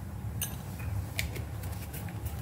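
A steel spoon clinking a few times against a small glass bowl as it stirs oil and ground spices: light, separate clicks.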